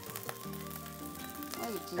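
Soft background music with held notes, over a faint sizzle of rice frying in the wok.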